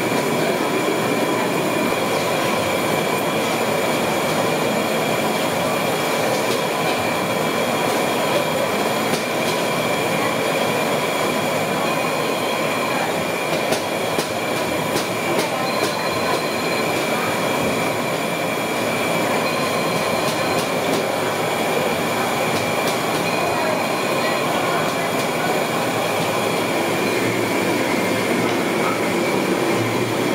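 Gulab jamun dough balls deep-frying in a large iron kadai of hot oil: a steady, even sizzle.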